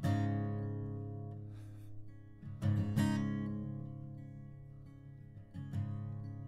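Dreadnought acoustic guitar strummed in slow, spaced chords. One chord at the start is left to ring and fade, two more strums come close together about two and a half to three seconds in, and another comes near the end.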